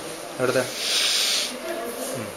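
A person's voice: a short syllable about half a second in, then a loud drawn-out hiss like a 'shh' lasting under a second.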